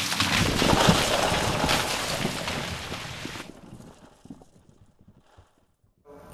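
Intro sound effect: a loud burst of crackling noise that fades away over about four seconds, down to near silence shortly before the end.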